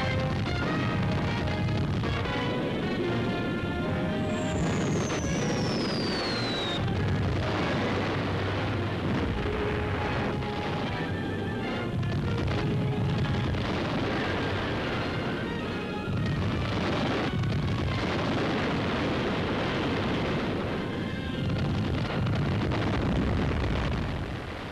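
Music mixed with battle sounds: explosions and gunfire. About four seconds in, a long falling whistle drops in pitch for a couple of seconds and cuts off suddenly.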